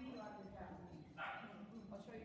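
A small dog gives one short bark a little past the middle, over faint talk in the room.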